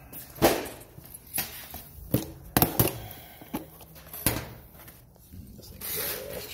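Footsteps and handling knocks on a concrete floor: about seven irregular sharp knocks and clicks, a few loud, in a small hard-walled room.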